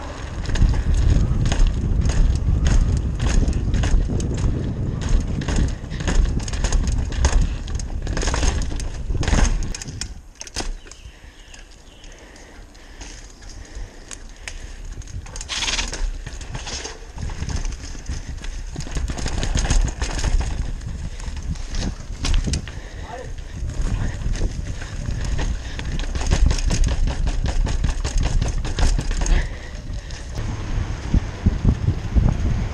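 Downhill mountain bike ridden fast over brick paving, with a continuous low tyre rumble and frequent rattles and knocks from the bike. There is a quieter, smoother stretch for a few seconds near the middle.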